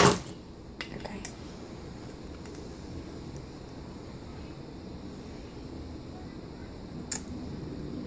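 A few faint clicks of clear plastic being handled, a clear stamp and acrylic stamping block: two about a second in and one near the end, over steady low room noise.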